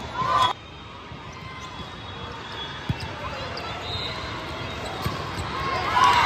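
Volleyball being played in a large, echoing hall: a couple of sharp hits on the ball come over a steady murmur of voices from players and spectators. A short shout opens it and stops abruptly half a second in, and voices swell near the end.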